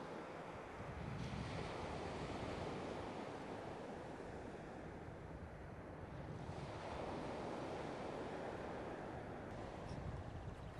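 Sea surf breaking on a beach, a steady rushing that swells twice, with wind noise on the microphone.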